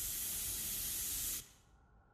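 A steady, bright hissing rush, a sound effect from the anime's soundtrack under a white flash of light, that cuts off suddenly about one and a half seconds in.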